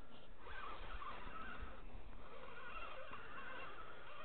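Fishing reel being cranked steadily as a hooked burbot is brought up from deep water, with a faint wavering whine from the reel.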